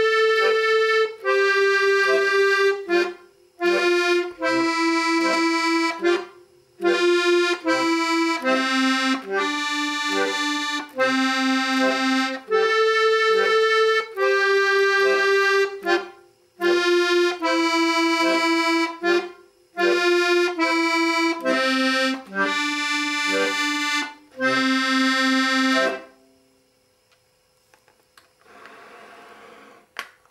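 Piano accordion playing a simple single-line melody on the treble keys, note by note with short gaps, with brief bass-button notes underneath; the playing stops about four seconds before the end.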